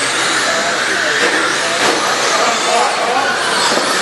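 Several radio-controlled dirt-oval race cars running in a pack, a steady whine of small electric motors and tyres on dirt. Voices sound in the background.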